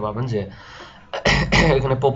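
A man clears his throat, sudden and loud, a little over a second in, after a few words of speech and a short breath.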